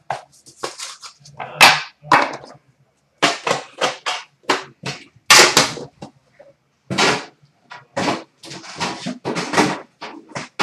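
A run of short rustling and handling noises, a dozen or so brief bursts with gaps between them, as trading cards and their plastic and cardboard packaging are sorted by hand.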